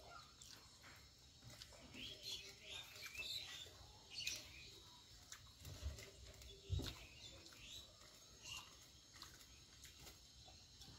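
Faint hand-eating sounds: fingers working rice and fish curry against a steel plate and soft chewing, with scattered small clicks, the sharpest a little before seven seconds in. A few faint bird chirps sound in the background.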